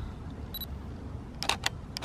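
Canon 80D DSLR giving its short focus-confirmation beep about half a second in. A quick cluster of sharp shutter and mirror clicks follows near the end as photos are taken.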